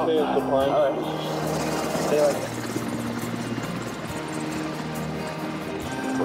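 Background music under a steady rushing noise from archival war film, with a wavering voice in the first second.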